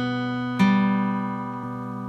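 Crafter acoustic guitar played fingerstyle through a C–Bm passage: notes already ringing, one more note plucked about half a second in, then the chord left to ring and slowly fade.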